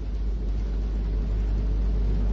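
A steady low rumble with faint hiss underneath, with no pitch changes or distinct events.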